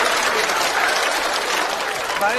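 Studio audience applauding steadily after a joke.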